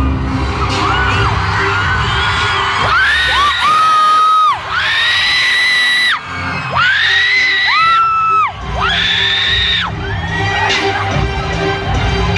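Live arena concert heard from the stands: loud amplified music with a steady low bass and a run of long high held notes, each sliding up into its pitch, with the crowd screaming and cheering underneath.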